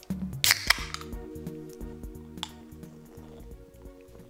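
An aluminium pull-tab drink can being cracked open: two sharp pops close together about half a second in. Background music with held tones plays under it.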